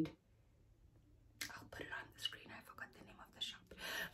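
Dead silence for about a second and a half, then a woman's voice speaking very softly, close to a whisper.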